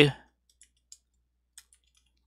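A few faint computer-keyboard keystrokes, scattered clicks over about a second, as a word is typed.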